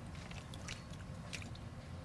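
Soft, wet squishing of fresh kesong puti curds and whey sliding out of a stainless steel pot into a cheesecloth-lined strainer, with a thin trickle of whey and a few faint ticks.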